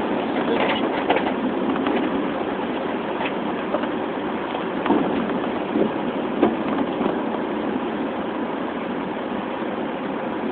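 Car cabin noise while driving on a rain-soaked road: a steady hiss of tyres and engine, with a few faint ticks.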